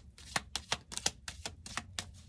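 Deck of oracle cards being shuffled by hand: a quick, uneven run of sharp card clicks, about six a second.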